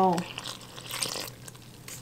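Water pouring into flour in a stainless-steel mixing bowl while a silicone spatula stirs it: a soft hiss that fades out a little over a second in, with a few faint scrapes.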